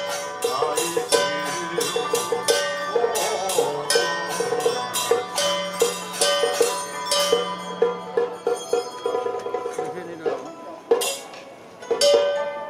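Traditional Taiwanese temple ritual music: quick, regular percussion strikes under held melodic notes. The percussion thins out after about nine seconds, with one loud strike near the end.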